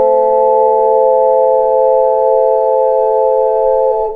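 Several layered ocarinas holding a final chord in steady, pure tones over a lower held note, releasing near the end.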